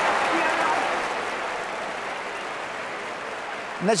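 Applause, loud at first and slowly dying away. A man's voice calls out a name right at the end.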